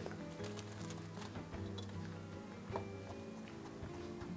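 Chef's knife chopping fresh parsley on a wooden cutting board, a run of light, irregular taps of the blade on the wood, under soft background music.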